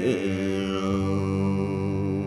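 Folk band instrumental passage: a steady drone of held notes from bowed strings and accordion, with a wavering line just after the start.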